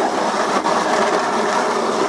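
Plastic-bladed snow shovel pushed along a concrete walk, scraping and chipping off a layer of ice in one long, continuous scrape.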